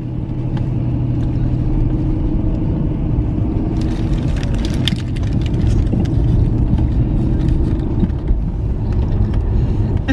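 A car's engine and road noise heard from inside the cabin while driving, a steady low hum. From about four seconds in, a paper sandwich wrapper crinkles in short bursts over it.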